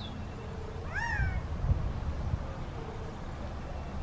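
A male Gambel's Quail gives one loud call about a second in: a short note that rises and then falls in pitch.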